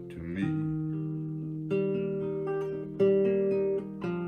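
Classical guitar strumming chords between sung lines: three chords struck, each left ringing before the next.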